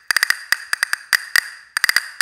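Pair of wooden handle-style castanets played in the air with a hinging grip: a quick rhythmic pattern of sharp clicks, some in fast flurries, each with a strong resonant ringing tone.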